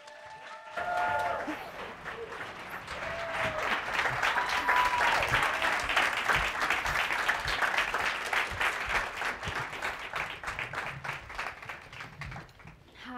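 Audience applauding. It builds over the first couple of seconds, holds steady, and thins out near the end.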